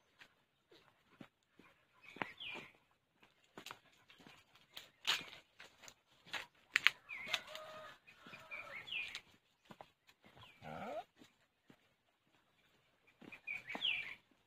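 Footsteps on a dirt path, with scattered short animal calls: high chirps, and a louder call that rises in pitch about three quarters of the way in.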